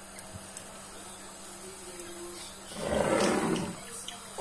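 A cloth rubbed across a kitchen countertop: one short, rough rasping rub about three seconds in, over a faint steady hum.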